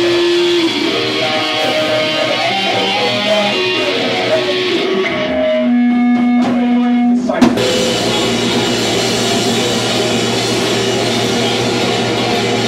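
Live rock band playing an instrumental cover: an electric guitar riff with drums, a single held note, then about seven and a half seconds in the full kit and band come crashing back in together.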